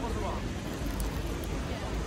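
City street ambience: a steady low hum of traffic and street noise with faint voices in the first moment.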